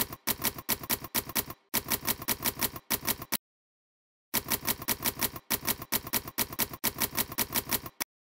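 Manual typewriter keys striking in quick runs of about six a second, with short breaks between words and a pause of about a second a little before halfway.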